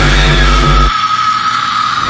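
Horror trailer sound design: a heavy low rumbling drone under a steady high sustained tone. About a second in the rumble cuts off abruptly, leaving the high tone ringing on.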